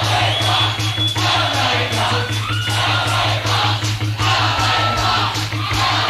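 Live rock band playing at full volume, recorded from the room: a steady drum beat and a heavy bass under guitars, with a long held high note in the first half.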